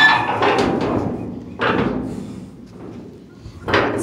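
A stiff door being forced open: a scrape with a short squeal at the start, then rattling and knocks as it sticks, loud again near the end.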